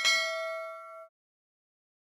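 A single bright bell-like ding sound effect, struck once, ringing for about a second and then cut off abruptly.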